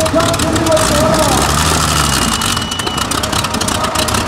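Large custom-built pulling tractor's multi-cylinder engine idling with a fast, uneven firing.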